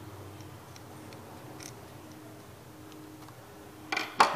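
Faint small clicks and ticks of metal parts and a small tool being worked on a spinning fishing reel's rotor and bail-arm mechanism during reassembly, with a sharper click just before the end. A low steady hum runs underneath.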